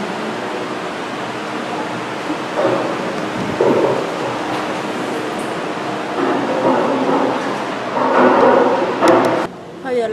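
Steady rushing air noise of electric fans running in a room, with muffled voices faintly behind it; the noise cuts off suddenly near the end.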